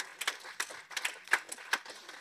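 A quick, irregular run of sharp clicks and ticks, several a second.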